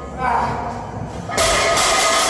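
A loaded deadlift barbell dropped from lockout onto the gym floor about one and a half seconds in, its iron plates clanging, with men's voices shouting throughout.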